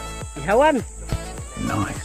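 Two drawn-out vocal calls, each rising then falling in pitch, about half a second in and again at the end, over a steady high-pitched insect drone.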